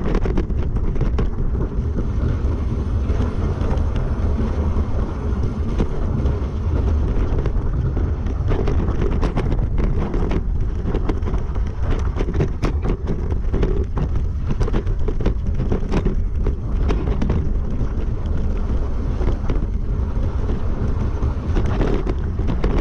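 Wind buffeting the microphone of a camera mounted on a mountain bike riding downhill, over a steady rumble of knobby tyres on a rocky gravel trail. Frequent sharp clicks and knocks come from the bike rattling over stones.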